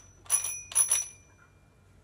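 Toy telephone's bell-like ring sounding twice, about half a second apart, as its buttons are pressed to dial; the second ring dies away over about a second.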